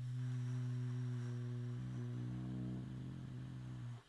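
A man's long, low, closed-mouth "hmmm" hum of deliberation, held at a steady pitch, shifting slightly in tone about halfway and cutting off suddenly near the end.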